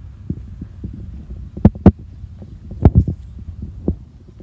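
Handling noise from a camera carried by someone walking: a low rumble on the microphone with irregular dull thumps, the loudest coming in close pairs about halfway through and a little later, and one more near the end.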